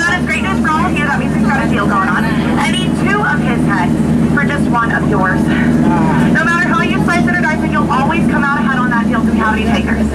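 A man talking without pause over the steady low hum of a tour boat's motor.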